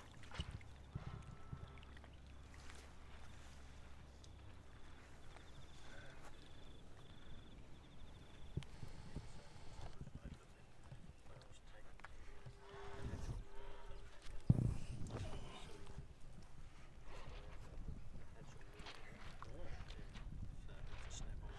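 Faint, indistinct voices of people talking at a distance over outdoor background noise, with a low rumble in the first few seconds. A sharp knock a little past the middle is the loudest moment.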